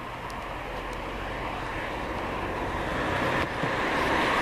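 A vehicle's steady low rumble and hiss, growing gradually louder.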